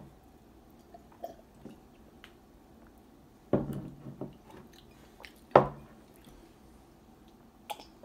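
Soda being sipped and swallowed from drinking glasses, with a few light ticks of glass on the table and two short louder mouth sounds about three and a half and five and a half seconds in.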